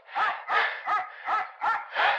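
A person laughing in about six short, pitched bursts, each roughly a third of a second apart.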